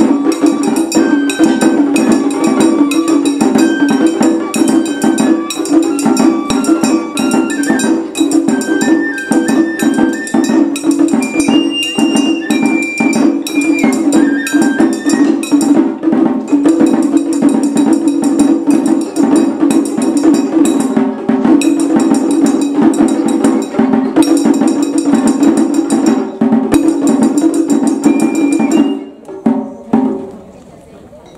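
Japanese festival hayashi ensemble: a shinobue bamboo flute plays the melody over rapid shime-daiko drumming and a large drum. The piece ends about a second before the close.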